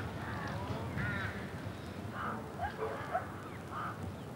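Faint outdoor bird calls: several short, scattered calls over a steady background hum.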